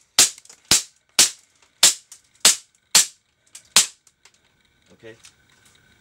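KWC Tanfoglio CZ75 IPSC full-metal CO2 gas-blowback airsoft pistol firing seven sharp shots, about two a second, with the last one nearly four seconds in.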